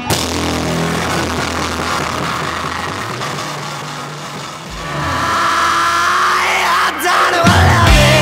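Rock music: held low chords that sag slightly, swell again about five seconds in, and then heavy drums crash in near the end.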